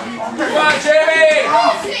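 A man's voice shouting a drawn-out yell lasting about a second, its pitch arching up and down.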